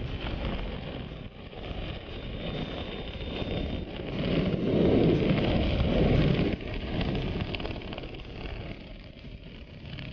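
Wind from the airflow of a parachute descent under an open canopy, rushing and buffeting on the camera microphone. It swells to its loudest about halfway through, then drops off suddenly and stays lower.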